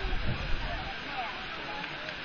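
Steady rush of a waterfall and its stream, with low rumbling bumps in the first second.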